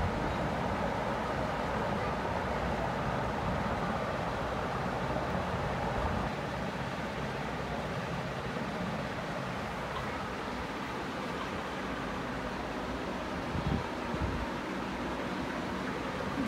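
Steady, even rushing background noise, with a couple of soft knocks about fourteen seconds in.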